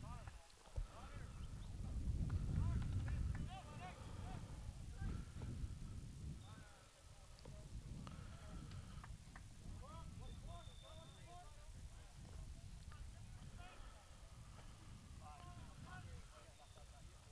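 Distant shouts and calls of soccer players on the field as a corner kick is set up, a few short calls at a time, over a low rumble that swells about two to four seconds in.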